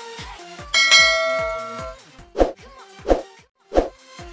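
Electronic dance music with intro sound effects laid over it: a bright bell chime rings out about a second in and fades, then three short pops come about two-thirds of a second apart.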